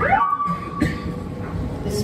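An electronic tone that swoops down in pitch and then holds one steady note for about a second and a half, like a fragment of an electroacoustic piece.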